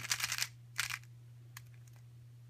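A 3x3 Rubik's cube being turned quickly by hand, its plastic layers clicking as the moves are executed. A rapid run of clicks comes first, then a second short run just before a second in, and a single click later.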